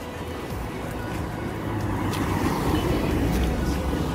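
Road vehicles passing close by. The engine and tyre noise swells to a peak in the second half, over background music.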